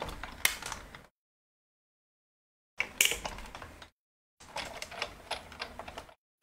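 Hand-cranked Sizzix die-cutting machine rolling a plate-and-die sandwich through its rollers to cut cardstock, with clicking and creaking from the crank and plates. It comes in three spells of about a second each.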